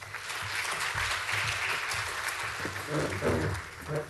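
Audience applauding: steady clapping from a seated crowd that thins out and fades in the last second, with a brief voice heard near the end.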